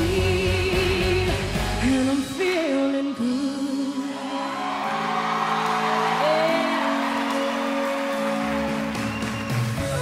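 Female singer's wordless vocal ad-libs with strong vibrato, held and sliding notes over a live band's sustained chords.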